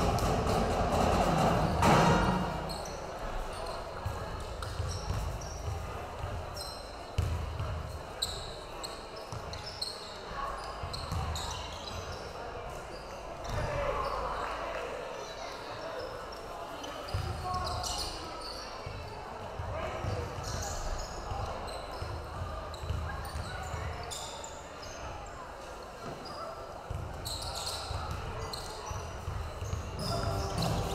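Basketball game in a gym: a ball bouncing on the court, short high squeaks from sneakers, and indistinct voices of players and crowd. A bit of music plays at the start and stops about two seconds in.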